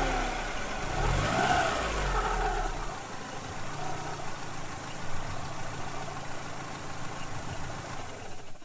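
Car engine sound, rising and falling in pitch with a heavy low rumble for the first few seconds, then running on more evenly and quieter: a car that is cranked but won't start because it is out of gas.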